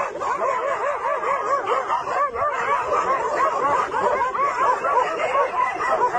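A pack of dogs barking and yelping without a break, several short overlapping barks a second.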